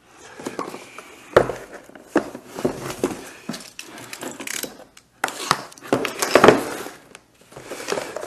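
Cardboard parts box being handled and opened, with rustling and scraping of the packaging and scattered knocks on the workbench. A sharp knock comes about a second and a half in, and a louder spell of handling comes around six seconds.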